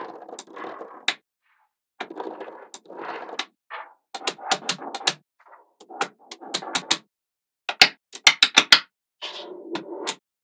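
Small magnet balls clicking and snapping together as strips of them are pressed into place, with short rattling clatters between the sharp clicks. About eight seconds in comes a quick run of louder clicks, roughly five or six a second.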